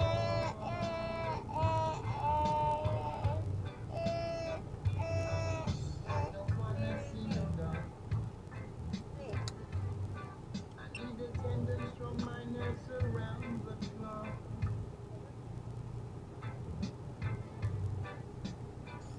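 Background pop music: a voice singing held melodic notes over the first few seconds, then a quieter stretch carried by a pulsing low beat.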